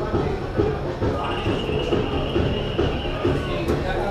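Football-ground ambience: a dense low rumble with indistinct voices mixed in, and a faint high held tone through the middle.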